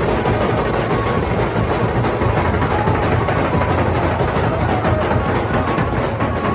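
Nashik dhol band drumming, loud and dense with a heavy low end, with short held melody notes sounding above the drums.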